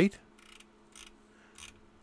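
Quiet room tone with a low steady hum and three faint, short clicks spread through the pause.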